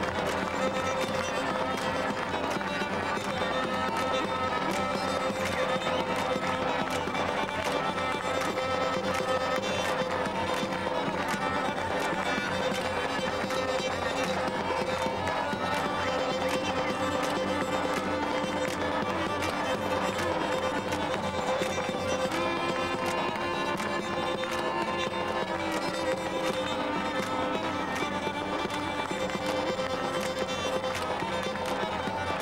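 Black Sea folk dance music: a bowed kemençe fiddle plays a busy melody over a held drone, with a davul bass drum keeping a steady beat.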